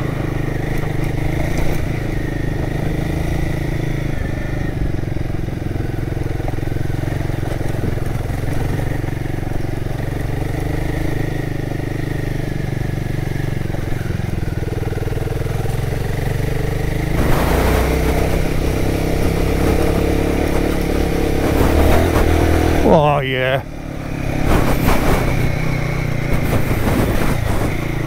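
Royal Enfield Guerrilla 450 single-cylinder engine running under way on a rough lane, heard with road and riding noise. The sound grows louder about two-thirds of the way through. Near the end the revs drop sharply and then pick up again.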